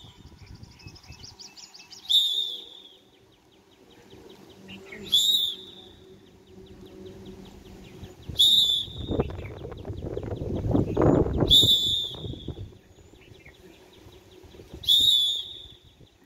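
Short, sharp whistle blasts, five of them about three seconds apart, pacing the exercise. A louder stretch of low noise runs through the middle.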